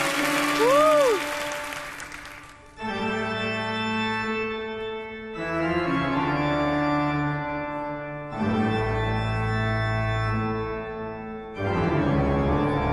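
Audience applause with a single whoop fading out over the first couple of seconds. Then sustained, organ-like keyboard chords open a song, each held about three seconds, three in a row before a brief break and the next chord.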